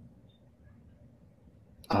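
Near silence: faint low room tone during a pause in talk, then a man's voice starts up near the end.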